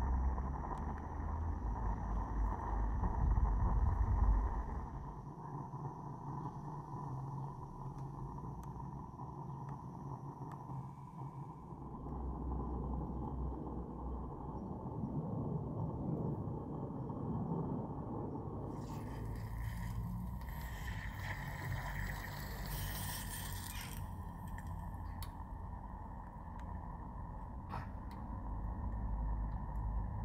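Small live-steam model locomotive running on its track: a steady low rumble with a constant whistling tone over it. A burst of hissing comes about two-thirds of the way through.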